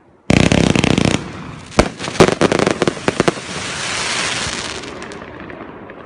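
Consumer firework cake going off: a sudden dense crackling burst about a quarter second in, then a quick string of sharp bangs, then a crackling hiss that swells and dies away near the end.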